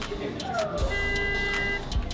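A steady horn-like tone lasting about a second, just after a brief voice-like sound that falls in pitch, over a low steady hum.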